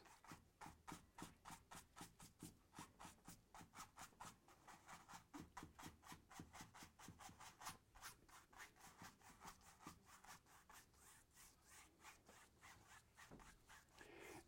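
Faint, quick strokes of a stiff paintbrush scrubbing and dabbing paint onto a canvas, about four strokes a second, blending and stippling the dark foliage.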